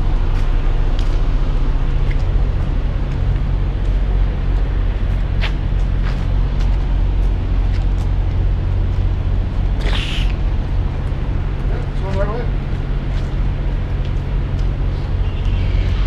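Diesel engine idling steadily: an even low rumble.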